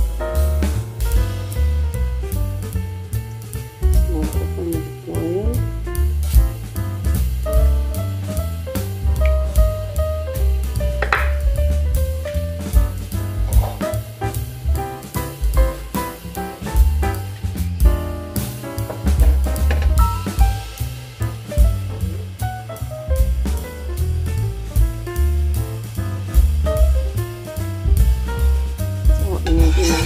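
Background jazz-style music with a drum kit, hi-hat and bass line keeping a steady beat.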